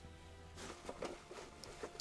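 Faint rustling and a few light clicks of packing material being handled inside a cardboard box, with faint music underneath.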